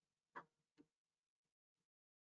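Near silence broken by four faint clicks. The first two come about half a second apart and are the loudest; the last two are fainter.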